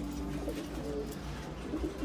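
Domestic pigeons cooing softly in a loft, over a steady low hum.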